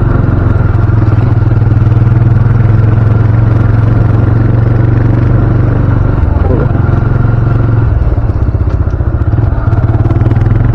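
Motorcycle engine running steadily while riding slowly, heard from on the bike, with a brief dip in level near the end.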